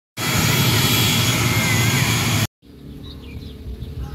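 Outdoor background noise from two spliced clips: a loud, steady rushing noise for about two and a half seconds that cuts off abruptly, then a much quieter background with faint high chirps.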